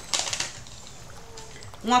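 Tarot cards being handled: a short, rapid papery riffle of little clicks lasting about half a second near the start.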